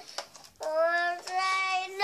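A young girl singing unaccompanied in long held notes. After a brief pause for breath at the start, she comes back in about half a second later with a note that slides up slightly, then steps up to a higher held note.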